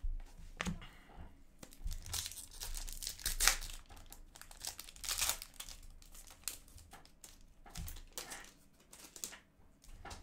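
Foil hockey card pack wrapper crinkling and tearing open as it is handled, in irregular crackles that are loudest around three and a half and five seconds in.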